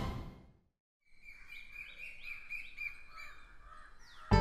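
The tail of a TV channel ident's music fades out in the first half second. After a brief silence, birds chirp in quick repeated notes, about three a second, faint against the programme's level.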